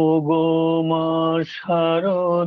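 A man singing a Bengali devotional song to Sarada Devi in long, held notes, with a short break for a consonant or breath about one and a half seconds in.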